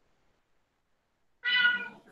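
Near silence, then about one and a half seconds in a single short high-pitched meow, lasting about half a second.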